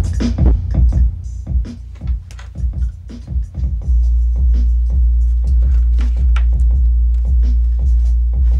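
Electronic music played loud through a Logitech Z906 subwoofer. Sparse drum hits for the first few seconds, then about four seconds in a deep, sustained bass note comes in and holds under the beat.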